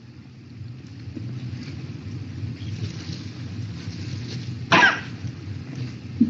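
A person coughing once, near the end, over a steady low hum.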